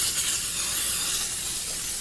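Aerosol cooking spray hissing steadily from the can onto a cake pan in one long continuous spray, then cutting off suddenly.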